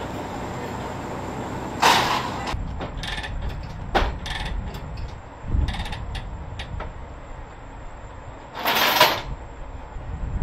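Steel tie-down chains being handled on a flatbed trailer deck: a string of sharp metallic clinks and knocks, with two louder rattling bursts, one about two seconds in and one near the end, over a steady outdoor rumble.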